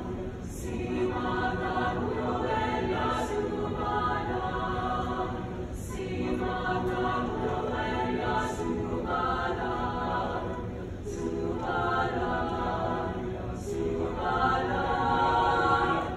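Mixed high school choir singing in harmony, in phrases of about two to three seconds with short breaks between them.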